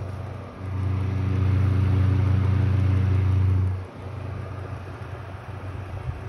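Honeywell desk fan running on a Jackery 1000's inverter, its motor giving a steady low hum. The fan is turning slower and blowing less hard than on wall power. The hum swells louder for about three seconds from half a second in, then settles back.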